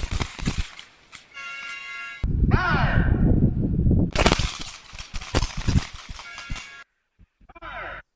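Handgun shots from a line of shooters firing at once, several cracks in quick succession in the first second and again from about four to six seconds in. Short steady ringing tones come between the volleys.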